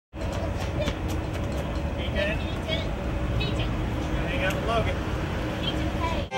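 Outdoor street ambience: a steady low rumble with scattered distant voices calling out.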